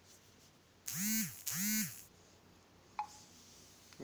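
Two identical short electronic sound effects in quick succession, each about half a second long, with a pitch that rises and then falls in an arch. These come with an animated like-button overlay. About a second later there is a brief click with a short ping.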